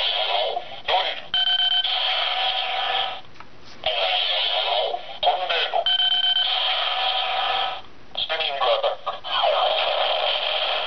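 Bandai DX Chalice Rouzer toy belt buckle playing its electronic sounds through its small, tinny speaker as rouse cards are swiped through it: short recorded voice calls alternating with held electronic tones. The cards are Drill and Tornado, set up for the Spinning Attack combo.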